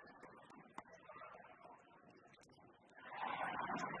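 Badminton arena crowd noise with a few sharp racket-on-shuttlecock hits during a doubles rally. About three seconds in, the crowd breaks into loud cheering as the rally ends and the point is won.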